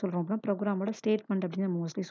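Speech only: a woman talking continuously, narrating.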